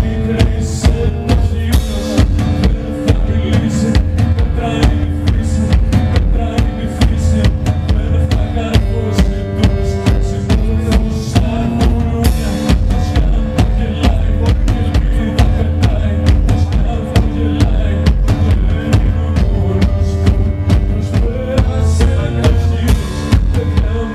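Live music: sustained keyboard chords over a steady, driving drum beat with a heavy bass drum.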